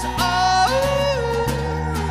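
Live pop-rock band playing, with acoustic guitar, bass and drums under a high wordless vocal line that steps up and glides back down between held notes.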